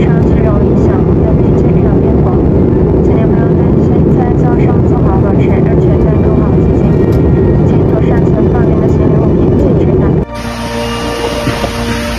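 Steady, loud in-flight cabin noise of a light aircraft, engine and airflow together, with voices faintly under it. It cuts off abruptly about ten seconds in.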